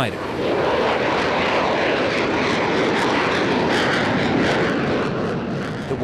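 F-35 fighter jet taking off under the power of its single Pratt & Whitney F135 turbofan: a loud, steady rushing noise that eases slightly near the end as the jet lifts off and climbs away.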